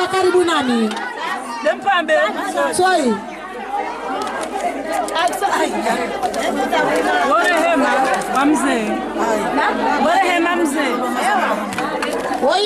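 Several women talking and calling out over one another, loud and overlapping, one of them into a handheld microphone.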